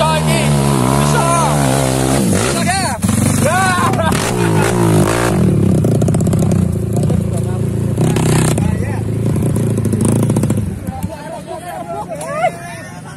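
Dirt bike engine revving hard under load as it climbs a steep hill, with people shouting over it. The engine cuts out about a second before the end, leaving voices.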